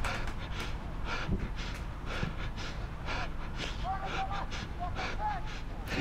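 On-pitch sound of a small-sided football match picked up by a player-worn action camera: brief shouts from players, occasional short knocks of footsteps and ball contacts, over a steady low rumble of wind and movement on the microphone.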